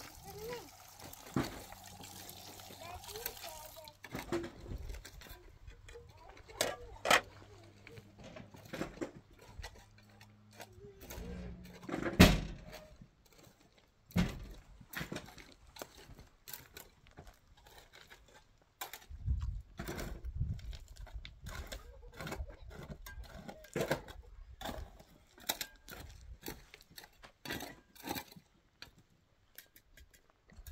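Water running from a tank's tap into a metal pot, stopping about four seconds in; then scattered knocks, clinks and small splashes as beets are washed by hand in the pot, with one loud knock near the middle.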